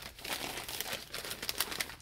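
A brown paper fast-food bag crinkling and rustling in the hands as it is lifted and turned, in a dense run of crackles that stops at the end.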